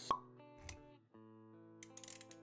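Motion-graphics intro music: a sharp pop sound effect right at the start, a soft low thud about two-thirds of a second in, then quiet held musical notes with a few light clicks near the end.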